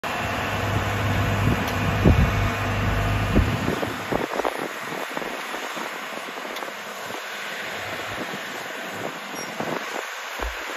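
Heavy tracked machinery at work: a tracked drainage plough and a tracked dumper feeding it gravel backfill by conveyor, their diesel engines giving a deep drone for the first few seconds. About four seconds in, the low drone drops away and a steadier, lighter mechanical noise carries on.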